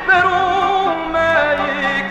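A man singing an Armenian song with instrumental accompaniment, holding wavering notes with a strong vibrato and moving to a new note about a second in.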